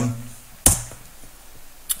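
Computer keyboard keystrokes: one sharp key click about two-thirds of a second in and a fainter one near the end.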